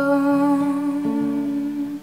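A woman's voice holding one long, steady vocal note over softly played acoustic guitar, with a guitar note entering underneath about a second in.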